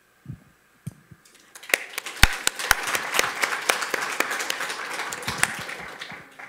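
Audience applauding, starting about a second and a half in and tapering off near the end, after a couple of soft low thumps.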